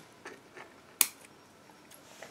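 A single short, sharp click about a second in, with a few faint ticks around it over quiet room tone.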